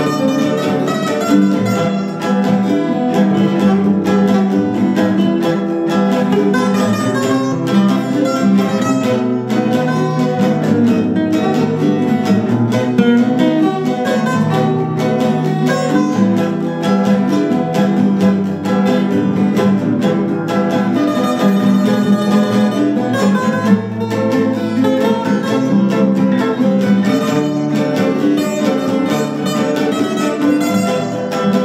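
An instrumental passage of a Cape Verdean morna, played on several nylon-string acoustic guitars together, with no singing.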